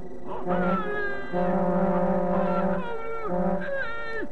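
Cartoon sound effects: a low, buzzing horn-like tone in four blasts, the third much longer, over higher held tones, with voice-like notes that slide sharply down in pitch between the blasts.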